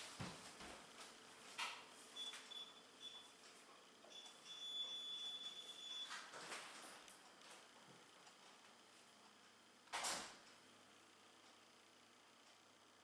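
Near silence: room tone, broken by a few faint knocks, the sharpest about ten seconds in, and a faint high whine for a few seconds in the first half.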